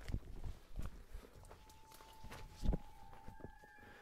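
Footsteps through brush and dry leaves, with scattered crackles of twigs and one sharper knock near the middle. A faint steady high tone sets in after about a second and a half and holds.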